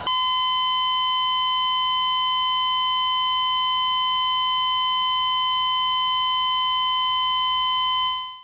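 Heart monitor flatline sound effect: one steady, unbroken electronic tone, the signal that the heartbeat has stopped.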